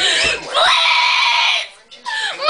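A young woman's loud, high-pitched scream, held for about a second before cutting off shortly before the end: a tantrum-like wail of frustration.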